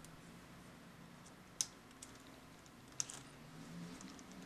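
Small sharp plastic clicks from handling the headphones' cheap plastic headband parts: two distinct clicks about a second and a half apart, with fainter ticks between.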